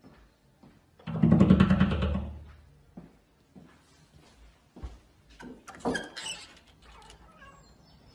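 A cat's rough, rapidly pulsing call lasting about a second and a half, followed a few seconds later by some faint knocks and clicks.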